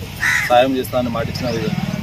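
A crow caws once, a short harsh call about a quarter second in, over a man's voice.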